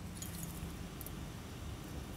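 Quiet room tone: a low steady hum, with a faint tick about a second in.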